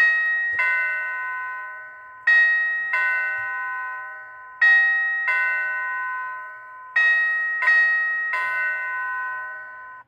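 Reliable Chimes model 4L wired warehouse door chime sounding a two-note ding-dong over and over, about every two and a half seconds, while its magnetic door switch is open. Each note rings on and fades, and the chime cuts off suddenly near the end, when the magnet is put back against the switch and the chime resets.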